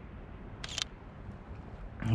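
A handheld mirrorless camera's shutter fires once, a short click a little over half a second in, over steady low background noise.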